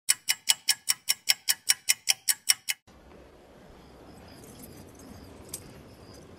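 Rapid mechanical clicking of a film-projector countdown-leader effect, about five even clicks a second, cutting off suddenly about three seconds in. It is followed by a faint hiss with short, high chirps repeating in the background.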